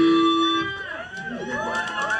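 The band's last held note on electric guitar and amplifier rings out and stops about three quarters of a second in, and the crowd starts shouting and whooping.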